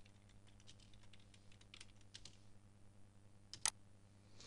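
Faint computer keyboard typing: scattered soft key clicks, with two louder clicks a little before the end.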